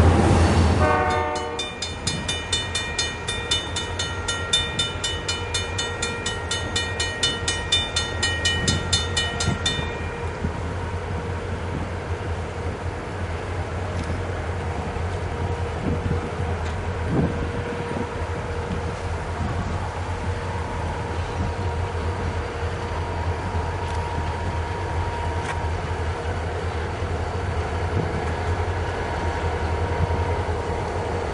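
Loud low rumble of freight cars rolling past close by, cut off about a second and a half in. Then a fast, evenly repeating high ringing runs for several seconds and stops suddenly about ten seconds in. Under it and after it, approaching EMD diesel freight locomotives give a steady low engine drone.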